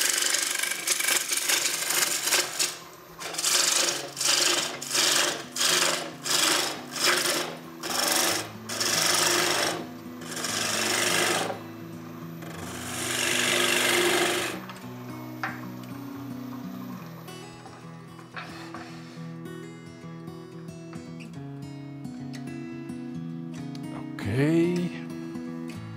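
A gouge cutting London plane wood spinning on a wood lathe: a steady cut for a few seconds, then a run of short cuts about twice a second, then two longer cuts. Background music runs underneath and is all that is left from about 15 seconds in.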